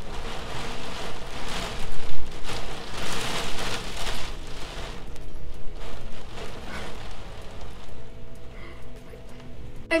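Wind-driven rain outside, a rushing noise that swells in the first few seconds and dies down about halfway through, with faint steady background music underneath.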